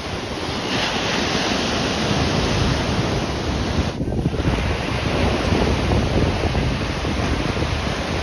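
Sea waves breaking and washing up the shore, with wind buffeting the microphone. The sound dips briefly about halfway through.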